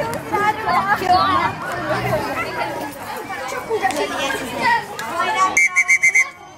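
Chatter of children and adults, with several voices talking over one another. Near the end the sound changes abruptly to a quick run of about five short high-pitched tones.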